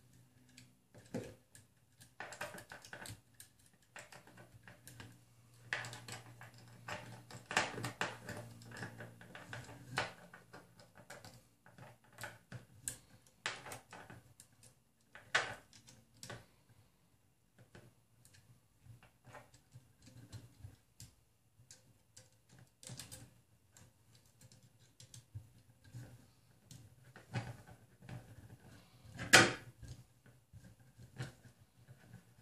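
Irregular small clicks, taps and rattles of a stepper motor and its M3 bolts being handled and fitted to the motor mount, with one louder knock near the end.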